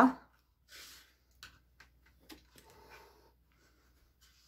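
Faint rustling and a few light clicks from hands handling a knitted sweater on circular needles.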